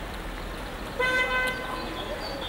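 A car horn sounding once, a short steady toot of about half a second, starting about a second in.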